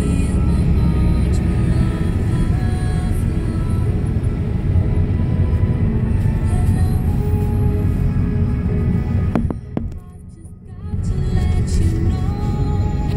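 Low, steady road rumble of a moving car heard from inside, with music playing over it. Both drop away for about a second near the end.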